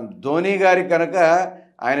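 Speech only: a man talking, with a short pause near the end.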